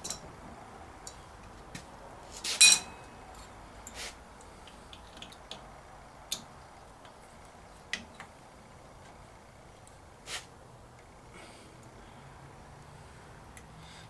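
Scattered light clicks and metallic clinks of a wrench and metal parts being handled at a milling machine's spindle mounting bracket, with one louder, ringing metal clink about two and a half seconds in.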